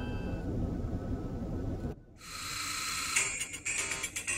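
Phone startup sounds, heavily edited: a chime's tones fade out over a low rumble, then after a brief dip about halfway a hiss swells and rapid jingling clicks start near the end as the next startup sound begins.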